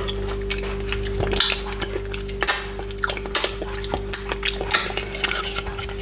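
Close-miked mouth sounds of licking fingers and eating frozen chopped pineapple: irregular wet smacks and clicks, over a steady low hum.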